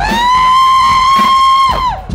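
A single loud brass-like note from the stage sound, swooping up into a high, steady pitch, held for nearly two seconds and then cut off just before the end.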